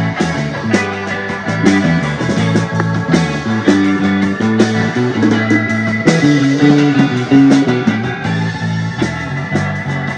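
Live blues-rock band playing an instrumental passage: electric guitars over keyboard, bass and drums, loud and continuous with a steady beat.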